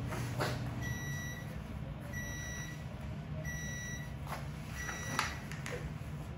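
An electronic beeper sounding four times, each beep steady in pitch, about half a second long and a little over a second apart, over a low steady hum. A sharp click sounds near the end.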